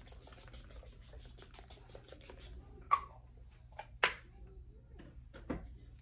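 A fragrance bottle being handled and sprayed: faint small handling ticks, then a few short, sudden spritz-like sounds, the loudest about three and four seconds in.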